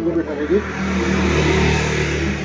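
A motor vehicle's engine running close by with road noise that swells and then eases, as of a vehicle going past, with voices behind it.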